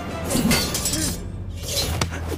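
Sword-fight sound effects: steel blades clashing and swishing in two bursts, about half a second in and again near the end, over a low steady music drone.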